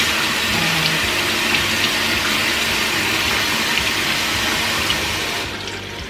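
Tap water running into a bathroom sink, splashing over a makeup brush and a silicone brush-cleaning pad held in the stream. The water sound turns softer and duller near the end.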